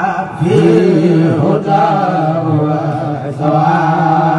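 A man's voice in a drawn-out Islamic religious chant of the Senegalese Mouride tradition, sung solo into a microphone. The notes waver and are held long, with short breaks for breath near the start, about one and a half seconds in, and just before the end.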